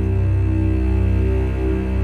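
Steady drone music: sustained reed chords from a shrutibox held over a deep low drone.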